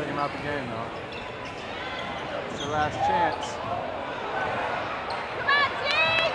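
Live game sound in a high school gym: a basketball bouncing on the hardwood under the hum of spectators, with players' and fans' shouts. A cluster of short, high sneaker squeaks comes near the end.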